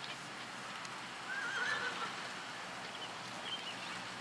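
A horse whinnies once, a short wavering call about a second and a half in. A few short, high chirps follow near the end.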